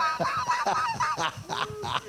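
Laughter in a rapid run of short, high-pitched bursts.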